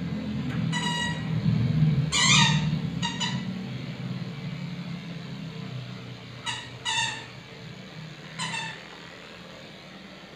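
Electric dog clippers running with a low hum that eases off after about six seconds. Over it a Shih Tzu gives about six short, high-pitched whines, one of them wavering.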